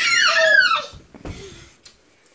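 A young child's high-pitched squeal of delight, gliding down in pitch and fading out about a second in.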